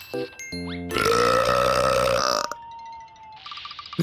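A long cartoon burp starting about a second in and lasting about a second and a half, over light background music.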